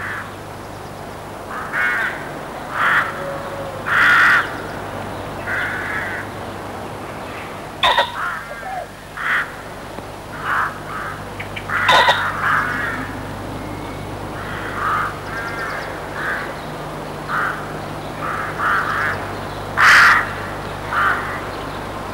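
Birds calling outdoors, short calls repeated every second or two, over a steady low hum.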